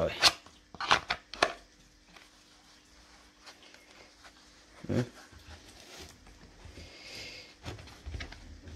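Plastic training pistol being drawn from and pushed back into a moulded kydex holster on a leather backing plate: a few sharp clicks in the first second and a half as the gun snaps against the kydex, a dull thump about five seconds in, then quiet handling rustle.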